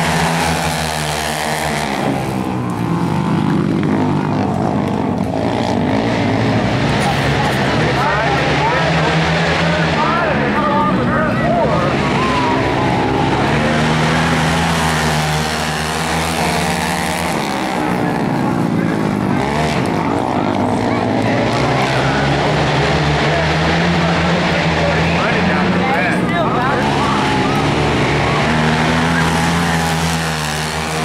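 Several racing quads' engines revving through the gears, their pitch repeatedly winding up and dropping back as the quads accelerate down the straights and slow for the turns, with more than one machine heard at once.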